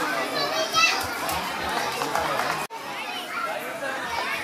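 A babble of many children's voices talking and calling out at once, with no single clear speaker. The sound breaks off abruptly for an instant a little past halfway, then the babble carries on.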